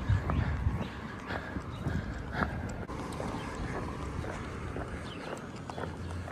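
Footsteps on a brick sidewalk at a walking pace: short hard steps, roughly two a second.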